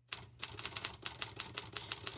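Typewriter keys clacking in a quick, irregular run of keystrokes.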